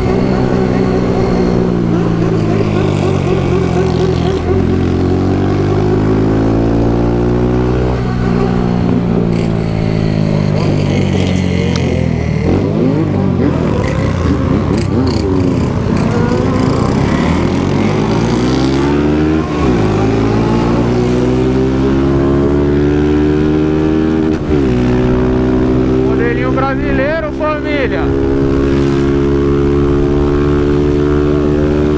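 Honda CG 160 motorcycle's single-cylinder engine being accelerated hard through the gears, its pitch climbing and dropping back at each gear change several times, then holding steady near the end.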